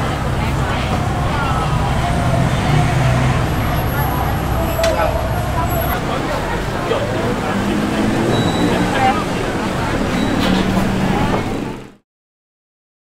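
Busy city-street ambience: road traffic running by with people talking in the background, fading out at the end.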